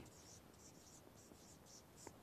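Felt-tip marker writing on a whiteboard: a faint run of short, scratchy strokes, a few each second.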